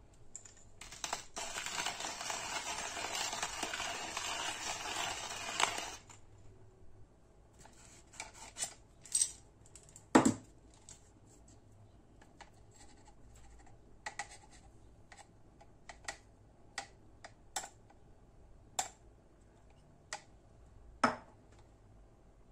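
Stainless steel hand coffee grinder and a coffee machine's plastic ground-coffee capsule holder being worked. First comes a steady gritty rustle of coffee grounds for about five seconds, stopping abruptly. Then scattered light clicks and taps of metal on plastic follow as the grounds are tipped into the holder.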